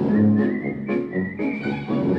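Closing theme music: a whistled melody over bass and chords, with a steady beat of about two strikes a second.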